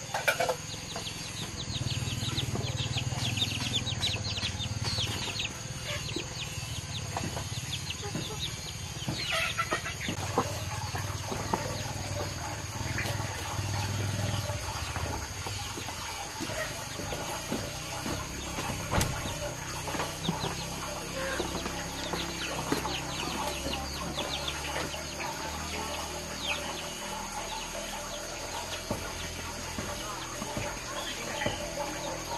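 Chickens clucking and calling with short, high, repeated notes scattered throughout, over a steady high-pitched background tone; a single sharp knock about two-thirds of the way through.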